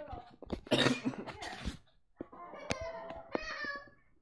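A person coughs about a second in. A couple of seconds later, music with held notes starts playing from a computer's speakers.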